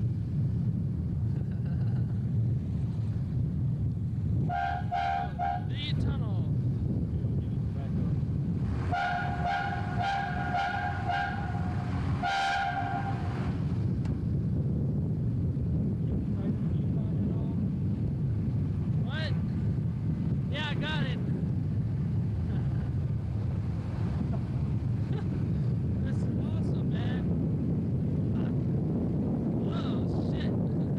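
Steady low rumble of a vehicle driving down a winding road, road and wind noise. A car horn sounds briefly about four and a half seconds in, then in two longer blasts from about nine to thirteen seconds.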